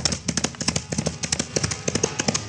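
Radio-drama sound effect of a horse's hoofbeats: a rapid, even clatter of clops as a rider gallops off.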